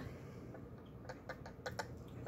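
Pinion and spur gear of an RC buggy's drivetrain clicking faintly as the spur is rocked back and forth by hand, a quick run of small clicks about a second in. The slight click is gear backlash, the sign that the pinion-to-spur mesh is set about right.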